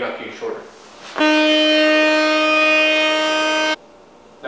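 A loud, steady, buzzy horn-like tone held at one unchanging pitch, starting abruptly about a second in and cutting off suddenly near the end, about two and a half seconds long.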